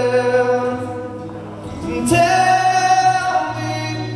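Live acoustic music: a male singer with acoustic guitar and violin, holding long notes. The sound dips about a second and a half in, and a new held phrase starts about two seconds in.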